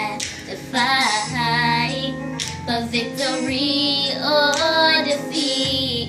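Two young girls singing a slow, melodic song along with recorded backing music.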